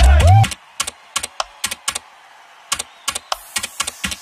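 Electronic music cuts off about half a second in with a falling sweep. Then comes typing on a SteelSeries Apex Pro mechanical keyboard: uneven single key clicks and quick runs of clicks with quiet between, and a rising hiss near the end.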